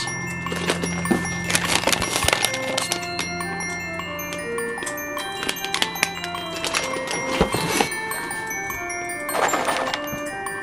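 Background music of chime-like mallet tones playing a light melody, with a few short bursts of crinkling from packaging handled in a cardboard box.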